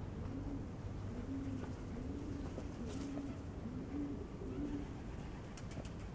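A feral pigeon cooing repeatedly: a run of short, low coos, each rising and falling, about one a second.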